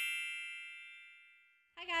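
A bright, bell-like logo chime, struck just before, rings and fades away, dying out about a second and a half in. A woman's voice starts speaking at the very end.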